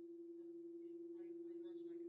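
A steady hum on one pitch, with a faint, distant voice talking under it from about half a second in.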